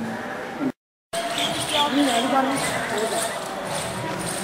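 People's voices, cut off by a brief total dropout to silence about a second in, then resuming with wavering, rising and falling pitch.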